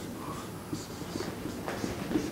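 Dry-erase marker squeaking and scratching on a whiteboard in a series of short strokes as a word is written.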